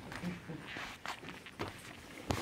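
Handling noise from a handheld microphone as it is passed from one person to another: irregular rustles and light knocks on the mic body.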